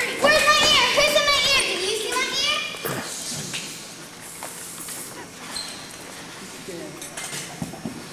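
Several children's voices cry out with a long, wavering squeal for about the first three seconds, then it goes quieter with shuffling and a few light knocks of feet and bodies on the stage floor as they settle.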